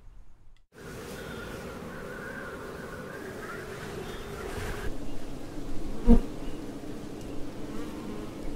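Many honeybees buzzing at a feral colony in a tree trunk: a steady hum starting just under a second in, with a single sharp knock about six seconds in.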